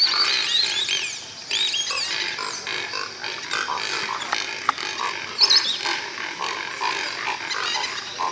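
A dense chorus of animal calls over a steady hiss. Many quick chirping pitch glides sit high up, with short repeated calls lower down and a few sharp clicks.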